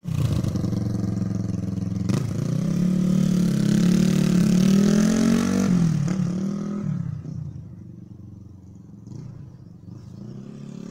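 1970 Honda CB350's air-cooled parallel-twin engine pulling away under throttle. A sharp click comes about two seconds in, the pitch climbs, then drops about six seconds in, and the sound fades as the bike rides off.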